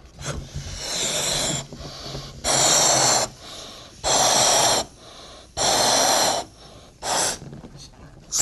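A man blowing hard through a sports-drink bottle's plastic pull-top spout to inflate a rubber balloon: five forceful breaths, the first softer, each about a second long or less, with quick breaths drawn in between.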